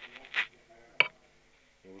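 A single sharp click about a second in, close to the microphone, preceded by a short soft rustle or breath.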